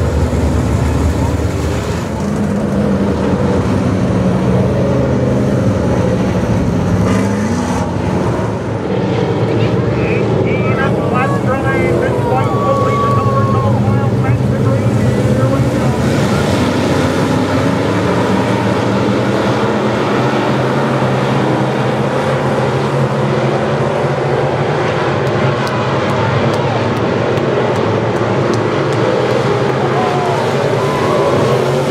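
A field of dirt-track modified race cars' engines running together in a loud, steady pack sound, their revs rising and falling as the cars run through the turn.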